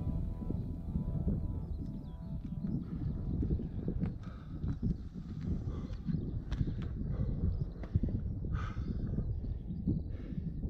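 Background music fades out over the first two seconds. After that comes a road bike rolling up a rough country lane, with wind rumbling on the microphone and scattered clicks and knocks from the bike.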